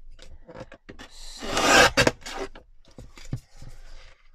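Kraft card being slid and rubbed across a plastic paper trimmer board, with a loud rasping scrape for about a second near the middle. Sharp clicks follow just after it, with light rustles and taps either side.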